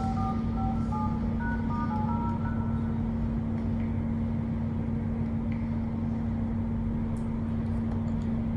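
Phone keypad tones as digits are tapped into an LG V20's dialer: a quick run of short two-note beeps over the first three seconds as a service-menu code is keyed in. Under them runs a steady low hum and rumble, from building work going on nearby.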